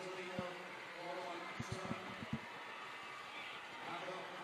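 Stadium crowd background, a steady murmur of many distant voices, with a few soft low thumps in the middle.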